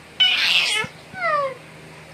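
An eight-month-old baby's loud, shrill squeal, followed a moment later by a shorter call that falls in pitch.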